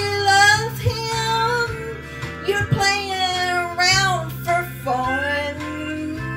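A woman singing a country song into a handheld microphone, holding long notes that bend in pitch, over a backing track with guitar.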